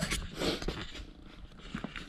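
Faint scraping and shuffling with a few light clicks: the sound of someone walking across a concrete garage floor while carrying a handheld camera.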